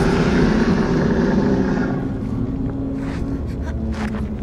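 A loud, low rumbling noise that thins out after about two seconds, with a steady low hum holding under it until near the end.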